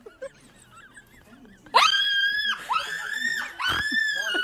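A woman's screams, very high-pitched: three long shrieks in quick succession, starting just under two seconds in after a quiet stretch.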